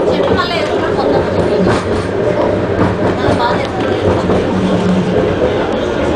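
Bombardier Innovia Metro Mark 1 people-mover car running along its elevated guideway, heard from inside the car as a steady rumble with a faint hum. Passengers' voices are heard over it now and then.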